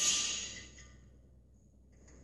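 A single sharp metallic clink at the start that rings on and fades away within about a second: a steel hand tool knocking against the oil gallery plug and engine case while prying the plug out.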